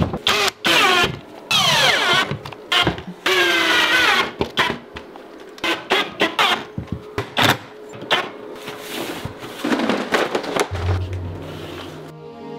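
Cordless drill/driver screwing plasterboard to the wall, its motor whining in several short runs about a second long, the pitch falling during some of them, with sharp clicks and knocks from handling the board between runs.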